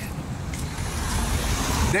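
Road traffic noise: a car running nearby, a low rumble with a noisy hiss that swells slightly toward the end.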